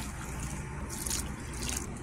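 Water poured steadily from a glass into a bowl of dry stuffing mix.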